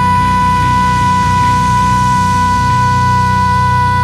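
A female singer holds one long, steady high 'ah' note with no wavering, over the band's low bass and guitar accompaniment.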